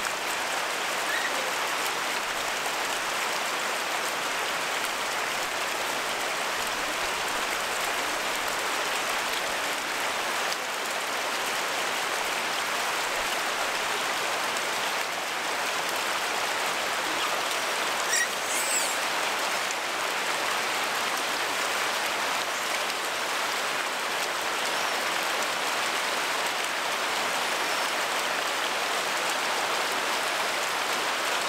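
Steady rush of running water, an even noise with no rhythm. A brief high squeak sounds about eighteen seconds in.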